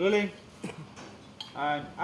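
A spoon clinks against a steel bowl a couple of times, between two short wordless voice sounds.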